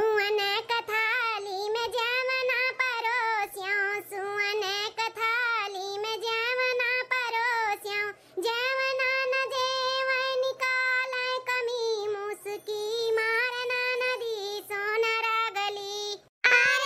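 A high-pitched female cartoon voice singing a folk song solo, holding long notes that waver in pitch, with a brief break about halfway through.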